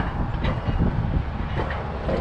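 Alpine coaster sled rolling along its metal rail track, a steady low rumble and rattle.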